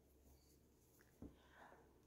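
Near silence: room tone, with one faint brief click a little over a second in.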